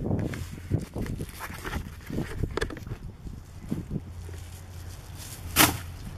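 Footsteps and handling noise from a handheld camera carried while walking, a series of light knocks and rustles. A single sharp, loud clack comes near the end.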